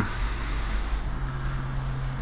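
A steady low hum under a faint even hiss; nothing starts or stops.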